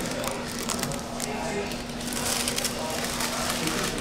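Biting into and chewing a crusty everything bagel, with the brown paper bag around it crinkling in the hands, over a steady low hum.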